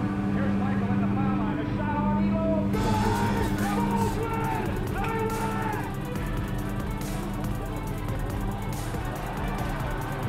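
Music with vocals playing from a highlight mixtape; a fuller beat comes in about three seconds in.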